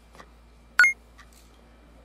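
A single short, high-pitched beep-like tone sounds about a second in. A few faint clicks come before and after it over a low steady hum.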